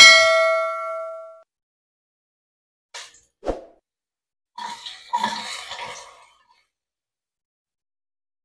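A bright bell-like ding, the notification-bell sound effect of a subscribe-button overlay, rings out and dies away over about a second and a half. A few seconds later come a soft click, a knock, and a short rustling clatter as sliced shallots are tipped from a plate into a metal frying pan.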